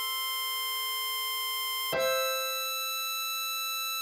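Two long, held blow notes on a diatonic harmonica, played one at a time. The second, higher note (hole 8 blow, E6) comes in about two seconds in and replaces the first (hole 7 blow, C6).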